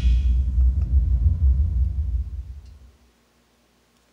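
A Logitech Z906 subwoofer playing deep, heavy bass as the end of a track, with the higher parts of the music dropping out within the first half second. The bass fades away about three seconds in.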